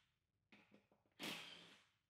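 Faint short run of a cordless drill/driver with a 10 mm socket backing out a seat-bracket bolt, lasting about half a second and fading out, after a few light clicks.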